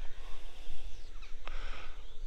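Wind buffeting the microphone in uneven gusts, with a few faint bird chirps a little over a second in.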